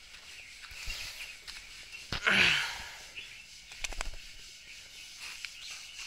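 A man laughs briefly about two seconds in. A few faint clicks follow near the four-second mark.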